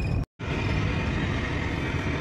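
Steady road and engine noise heard from inside a moving car. The sound drops out completely for a split second near the start.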